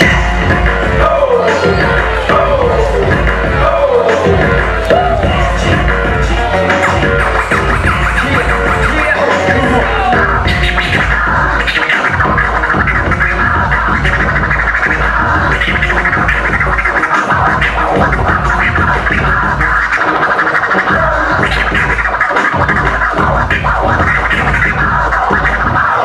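A turntablist routine: vinyl records scratched back and forth on two turntables over a heavy hip hop beat. The bass drops out briefly a few times as the records are cut and juggled.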